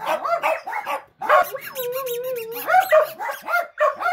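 Two dogs, a blue heeler and a small chihuahua-type dog, howling together. Quick yips that rise and fall in pitch give way to one long, wavering howl from about a second and a half in, then more yips near the end.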